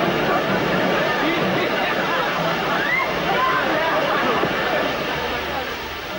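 Water from high-pressure car-wash spray jets rushing steadily onto a car, with voices and laughter over it.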